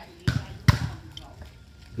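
A volleyball being struck twice during a rally, two sharp smacks about half a second apart in the first second.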